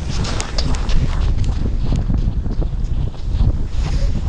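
Wind blowing hard on the microphone, a steady low rumble, with a string of footsteps on snow-covered river ice.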